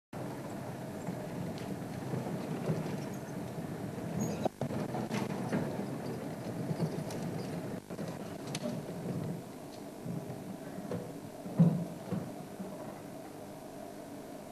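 African elephants feeding in dry bush: rustling vegetation and scattered snaps of branches, with one louder crack about two-thirds of the way through, over a steady low rumble.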